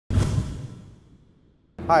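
Edited intro sound effect for a logo reveal: it starts suddenly with a low rumble and dies away over about a second and a half. A man then says "Hi".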